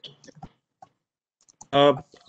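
A few quick, faint clicks in the first half second and one more just before a second in, then a man's hesitant 'uh' near the end.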